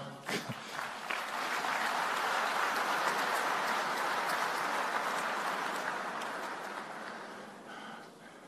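Large seated audience applauding, swelling in the first second, holding steady, then fading away over the last two seconds.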